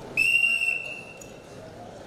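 Wrestling referee's whistle, one steady blast of about a second, blown as the match clock reaches three minutes to stop the bout at the end of the first period.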